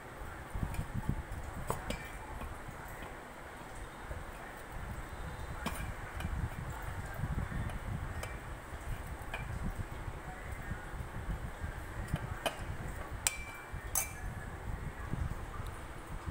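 A steel spoon stirs soaked sago pearls and crushed roasted peanuts in a stainless steel pot, giving irregular clinks and scrapes of metal on metal.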